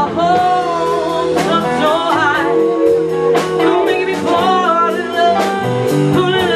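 Live blues band: a woman singing long held notes into the microphone over electric guitars, drums and keyboard.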